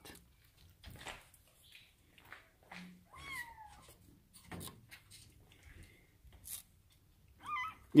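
A kitten mewing, a falling cry about three seconds in and a shorter one near the end, over faint rustling and clicking from the kitten being handled.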